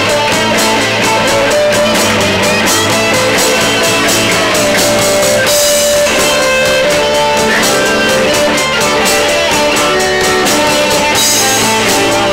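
Live rock band playing: electric guitars, bass guitar, keyboard and drum kit, with a cymbal crash about halfway through and another near the end.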